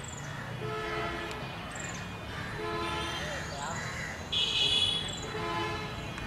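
Outdoor ambience: a short horn-like honk repeats every second or two, with faint high chirps like small birds. A louder, shrill tone sounds about four seconds in.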